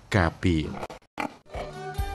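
A voice narrating a last phrase, a short pause, then music with steady held tones begins about a second and a half in.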